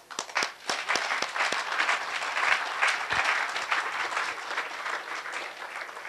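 Audience applauding. It starts suddenly with a few sharp claps, fills out into steady applause and thins out near the end.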